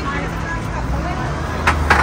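Takeaway kitchen background: a steady low hum under faint voices, with two sharp knocks close together near the end.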